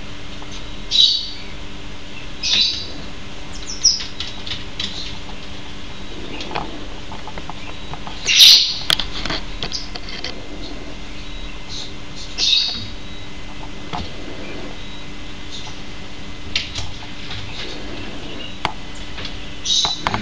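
Pygmy marmoset giving short, high-pitched chirping calls, about six of them spaced a few seconds apart, the loudest about eight seconds in.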